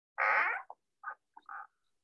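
A person's short vocal sound, about half a second long, then a few faint short fragments of voice.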